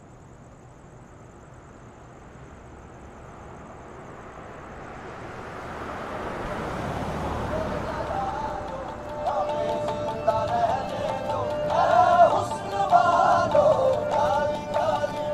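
A car approaching along the road, its engine and tyre noise growing steadily louder for about eight seconds as it comes near. About nine seconds in, music with a singing voice starts and becomes the loudest sound.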